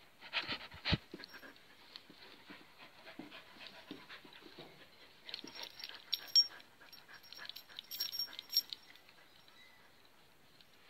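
Dog panting in quick, irregular breaths, with a loud knock about a second in and a few sharp clicks later on.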